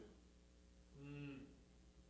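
A man's brief, low, wordless vocal sound, a filled pause, about a second in. Otherwise near silence.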